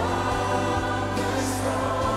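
Gospel choir music: many voices singing together over sustained low bass notes.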